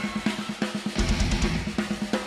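Live rock band's drum kit playing a steady beat of kick, snare and cymbal hits, with a heavy low bass note swelling in about halfway through.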